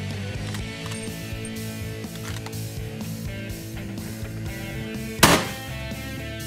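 Rock music with electric guitar plays throughout. About five seconds in comes a single loud rifle shot.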